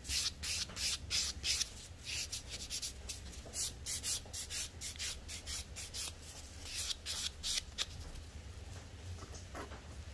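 Emery-board nail file filing a fingernail in quick back-and-forth strokes, about three a second, stopping near the end.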